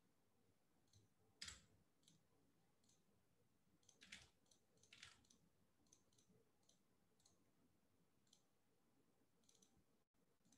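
Near silence with a few faint, short computer mouse clicks, the clearest about a second and a half in and around four and five seconds in.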